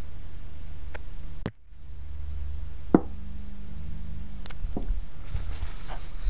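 Steady low mains hum from a large step-down transformer, taken from an old UPS and running warm on a long heat test, with a few knocks and clicks from the camera being moved. The sound drops out briefly about a second and a half in.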